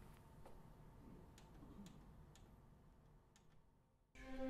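Near silence broken by about half a dozen faint, short clicks: buttons being pressed on a rack-mounted audio player to start playback.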